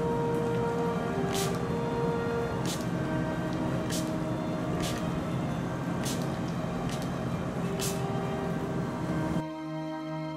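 Plastic trigger spray bottle squirting water mist onto painting paper in short spurts, about seven of them roughly a second apart, wetting the paper to render the waterfall's water vapour. Background music plays throughout.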